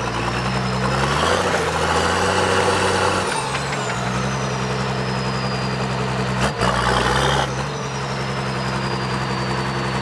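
Toyota Land Cruiser four-wheel drive engine running at low revs while crawling over rocks, its note shifting a couple of times with the throttle. A single sharp knock comes about six and a half seconds in.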